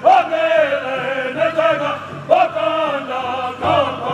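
A powwow drum group's men singing together in a loud, high-pitched chorus, in phrases that start high and fall away, a new one about every second. No drumbeats sound under the voices here.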